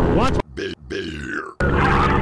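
Paramotor engine running steadily in flight, broken off abruptly for about a second by a man's grunting voice, then the engine comes back.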